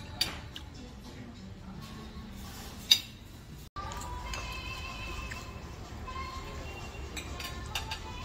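Table sounds of dishes and cutlery, with light clinks and one sharp clink about three seconds in, over a low room hum. After a break, faint music with long held notes plays.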